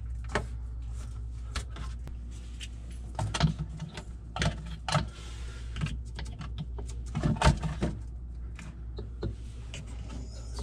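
Hands handling a refrigerator's plastic evaporator fan motor and its wire harness inside the freezer's plastic liner: a run of irregular clicks, taps and rattles, the loudest about three and a half, five and seven and a half seconds in, over a steady low hum.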